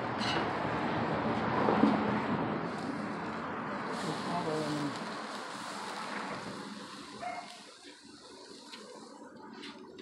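Pork chops sizzling on a gas grill over open flame: a steady hiss that grows quieter and duller in the last few seconds.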